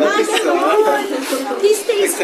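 Chatter: several people talking at a restaurant table.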